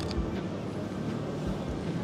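Outdoor city street ambience: a steady low rumble of traffic and passers-by, with a sharp click right at the start and a few soft low thumps.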